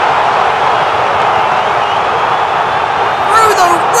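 A large arena crowd cheering in a steady, loud wash of many voices.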